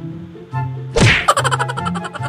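A single loud whack sound effect, sweeping quickly down in pitch, about halfway through, over background music with an even ticking beat and bass line.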